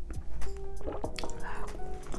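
Sipping and slurping sinigang broth from a small glass bowl, over background music.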